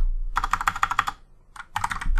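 Fingers typing on a computer keyboard: a quick run of keystrokes, a half-second pause, then another quick run.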